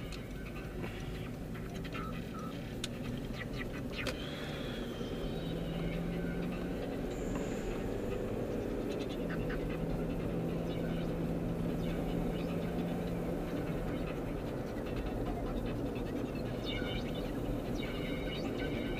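Car engine and road noise heard from inside the cabin as the car pulls away and drives along at steady speed. A low engine hum holds for a few seconds at a time in the middle, and there are a few faint clicks and ticks.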